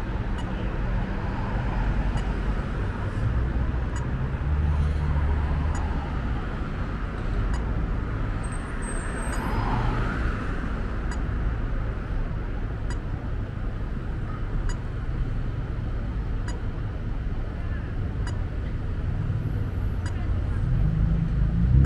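City street traffic: cars passing through an intersection, a steady rumble of engines and tyres that swells and fades as vehicles go by.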